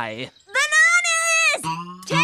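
Cartoon voices crying out in a rapidly wobbling, bleat-like wail as the characters are shaken by a shaking machine, followed by one long held cry of about a second. Music starts near the end.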